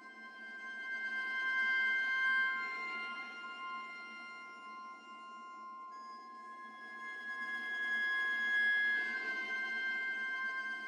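Sampled solo viola playing soft bowed harmonics: thin, high, whistle-like held notes over a faint bowing hiss. The sound swells up twice, with the notes changing about three and six seconds in.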